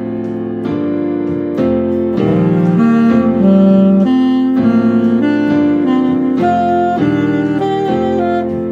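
Saxophone playing the G pentatonic scale pattern at slow tempo, a new note about every half second, in paired leaps (sol–do, la–re, do–mi, re–sol) climbing from low D, over a sustained keyboard backing chord.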